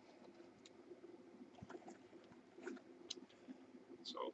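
Near silence, with a few faint taps and scuffs of cardboard trading-card boxes being set down and stacked on a desk.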